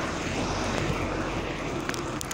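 A large motor vehicle passing with a steady engine rumble and road noise.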